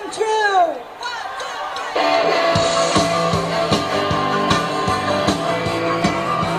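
A short falling voiced sound over crowd noise, then about two seconds in a live rock band starts a song: a steady drum beat with electric guitars.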